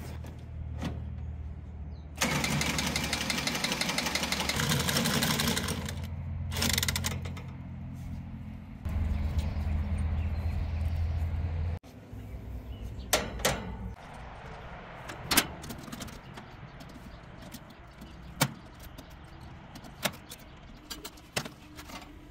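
A handheld cordless power tool runs in a burst of a few seconds while working on an outdoor AC condenser, over a steady low hum that grows louder and then cuts off suddenly about twelve seconds in. After that come scattered sharp clicks and knocks of tools and fittings being handled.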